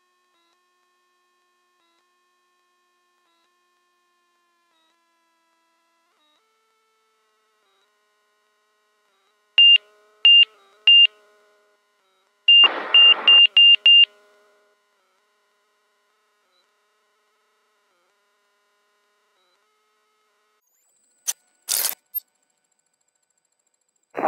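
Short, high electronic beeps over near silence: three evenly spaced beeps about ten seconds in, then a quicker run of five a couple of seconds later with a crackle under them. A brief burst of crackle follows near the end.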